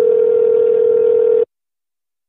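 A single steady telephone tone heard down the phone line, lasting about a second and a half and then cutting off sharply.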